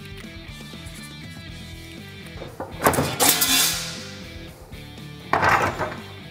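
Background music, with two loud, harsh metal noises, one about three seconds in and a shorter one near the end, from a floor sheet-metal shear working aluminum sheet.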